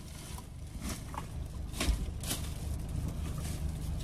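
Plastic garbage bags rustling and crinkling as they are handled, with a few short crackles over a steady low hum.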